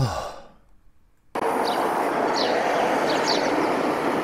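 A man sighs in relief, one breathy exhale falling in pitch. About a second and a half in, steady outdoor street ambience cuts in abruptly: an even hiss with faint short high chirps through it.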